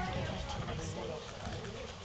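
Small children's high, wordless voices babbling and chattering, with gliding pitch.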